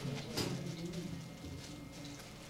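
Faint low murmur of distant voices, with one sharp tap about half a second in.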